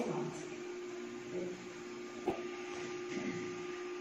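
Steady electrical hum over quiet room tone, with faint voices in the background and a single sharp click a little past halfway.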